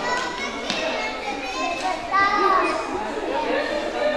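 Children playing and people chatting together, with a child's high voice calling out loudest about two seconds in.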